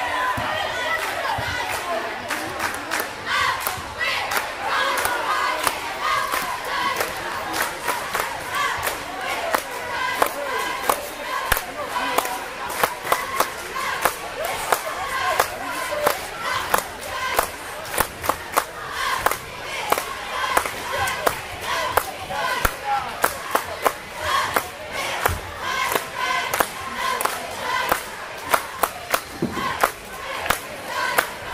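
A cheerleading squad chanting a cheer together, punctuated by many sharp claps, over the chatter of a gym crowd.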